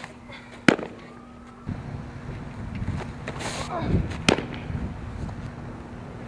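A softball smacking into a catcher's mitt twice: a sharp pop just under a second in, and another a few seconds later, the second just after the pitcher's grunt as she throws.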